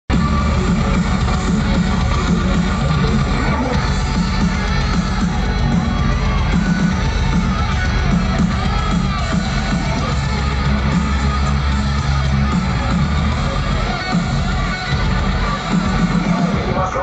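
Loud live music over a festival sound system, heard from within the crowd: heavy, steady bass with electric guitar, and crowd noise underneath.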